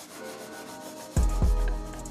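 Oil pastel rubbing back and forth on paper in scratchy strokes, over background music. About a second in, the music's deep bass comes in and becomes louder than the strokes.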